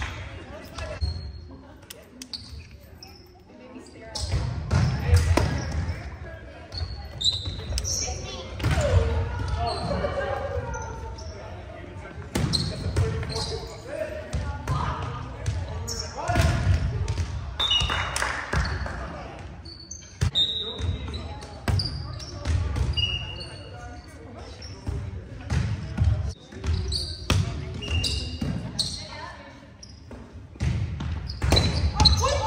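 Indoor volleyball play on a hardwood gym court: repeated thuds of the ball being struck and hitting the floor, short high sneaker squeaks, and players' voices calling out, echoing in the gym.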